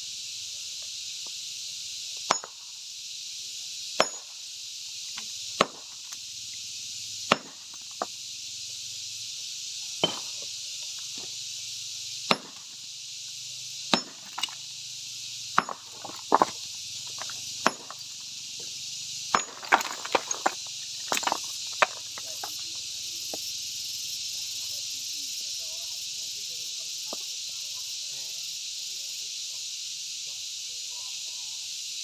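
Sledgehammer striking a large stone boulder to split it by hand: sharp single blows about every one and a half to two seconds, around fourteen in all, with a quicker cluster near the middle, stopping a little over two-thirds of the way through.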